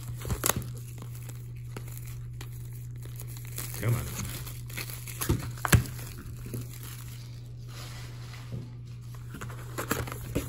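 Thin plastic shrink-wrap crinkling and tearing as it is peeled off a cardboard trading-card box, with scattered sharp snaps and crackles. A steady low hum runs underneath.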